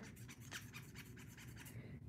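Faint, quick scratching of a fingernail rubbing back and forth over the textured face of a clay poker chip set in a pendant.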